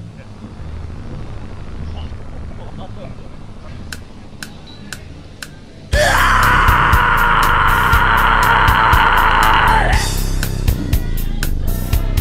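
Four sharp drumstick clicks counting in, then a grindcore band crashes in suddenly about six seconds in, playing fast drums and distorted guitar with a long high scream lasting about four seconds; the fast drumming runs on after the scream stops.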